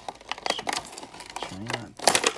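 Clear plastic blister crinkling and crackling in a run of sharp clicks as it is pried and peeled off the glued cardboard backing card of a carded action figure. A short wordless voice sound comes near the end.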